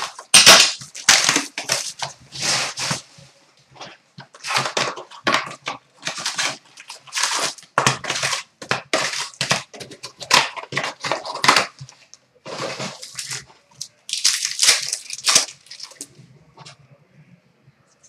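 Plastic wrap and trading-card pack wrappers crinkling and tearing as a hobby box is opened and its packs pulled out and ripped open. It comes as a quick run of irregular crackling bursts that dies down near the end.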